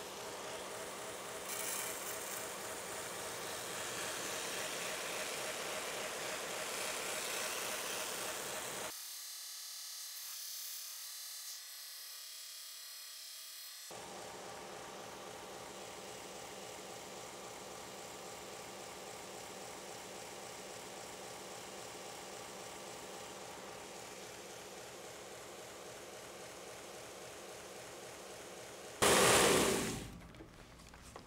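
2x72 belt grinder running a WD-40-lubricated surface conditioning belt, with a knife blade held against it over the soft platen for a satin finish: a steady motor and belt hum under the hiss of the abrasive rubbing on steel, louder for the first several seconds. The low hum drops away for a few seconds near the middle, and a short loud burst of noise comes just before the end.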